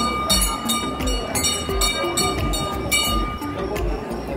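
Loud music with a steady drum beat, a stepping melody and a held high note above it.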